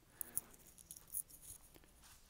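Near-quiet room tone with a few faint small clicks and light rustles, the sound of people shifting position, strongest about a second in.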